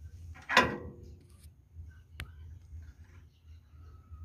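Close handling noise at a car engine's belt and pulley: a short scrape about half a second in, then a single sharp click a little after two seconds, over a low steady hum.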